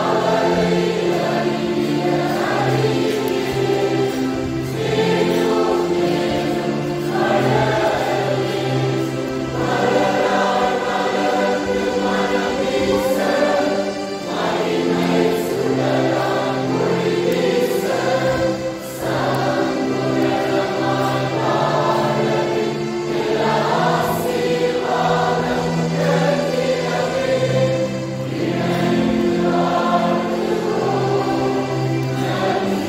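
A choir of young women singing a Christmas carol together, with sustained, steadily changing notes and no pauses.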